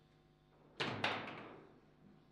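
Two loud bangs about a quarter second apart from play on a foosball table, ball and rods striking the table, each leaving a short ringing tail from the table body.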